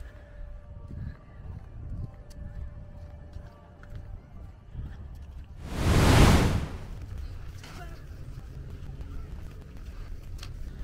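Wind buffeting the microphone with a low rumble while walking outdoors, and one loud whooshing gust about six seconds in that swells and fades within a second.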